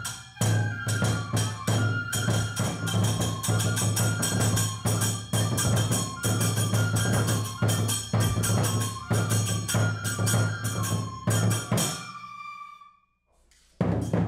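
Onikenbai festival music: a drum struck in a quick, steady beat with clashing hand cymbals and a flute playing steady held notes over them. The music fades away about twelve seconds in and stops shortly before the end.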